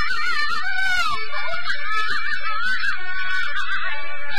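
Traditional Chinese opera music: a high melody with strong vibrato and pitch glides over accompanying instruments, punctuated by light, sharp percussion strokes.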